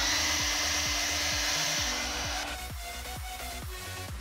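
Hair dryer running, a steady hiss of blown air that stops a little over halfway through, with background music underneath.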